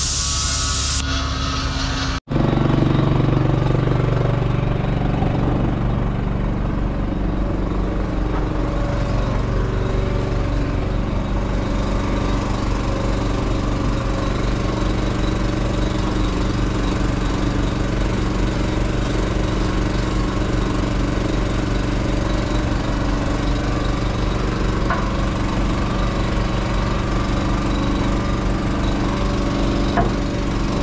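Background music for about the first two seconds, cut off abruptly, then an engine running steadily at idle with an even, unchanging hum.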